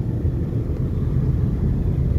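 Steady low rumble of engine and road noise heard from inside a moving vehicle.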